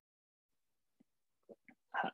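Near silence on a gated video-call audio feed, then a few faint, short voice sounds in the second half as a speaker starts to talk again.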